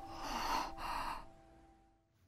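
Two quick, breathy gasps, one right after the other, over the fading ring of a sustained tone.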